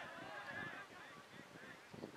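Geese honking, many short calls overlapping, faint.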